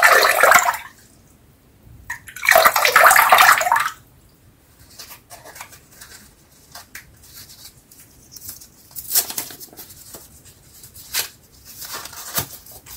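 Water pouring off a soaked shaving brush lifted out of a glass, in two loud splashing runs about two seconds apart. After that come small, quiet paper crinkles and clicks as a Treet Platinum double-edge razor blade is taken out of its card packet and paper wrapper.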